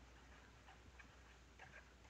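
Near silence, with a few faint, irregular ticks of a stylus tapping and moving on a drawing tablet as handwriting goes on.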